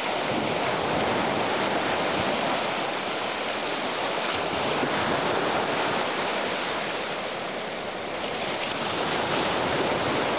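Small lake waves washing onto the beach: a steady surf rush that eases slightly for a moment near the end.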